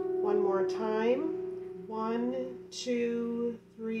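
A hammered dulcimer's last struck notes ringing on and slowly fading, with a person's voice talking over them in several short stretches.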